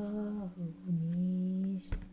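A person humming a slow tune in long, held notes that dip slightly in pitch. A sharp click comes near the end.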